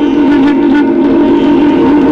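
Clarinet holding one long, steady note of a Hindustani classical raga, with a reedy, horn-like tone, over sustained harmonium accompaniment.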